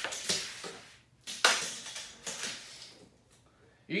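Handling noises from a tape measure and hands on a bare MDF subwoofer box: a few short rustles and taps, with one sharp knock about one and a half seconds in.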